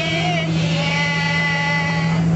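Bus engine droning steadily, heard from inside the passenger cabin, with voices over it.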